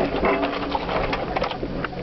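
Jeep Cherokee crawling over a rough, snowy trail, heard from inside the cab. A low engine note runs under a rapid, irregular clatter of knocks and rattles as the vehicle jolts over the rocks and ice.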